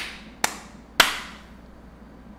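A man clapping his hands three times in an uneven rhythm. The second clap is the weakest and the third the loudest, and each has a short fading room echo.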